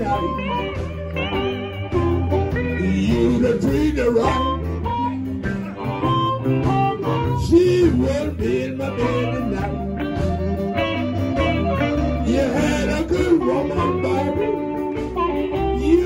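Electric blues band playing an instrumental passage, with harmonica played over electric guitars, bass and drums.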